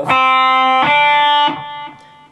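Electric guitar playing two single notes of a D minor 7 arpeggio, one after the other. The second note is slightly higher and starts a little under a second in; each rings for most of a second before the sound dies away.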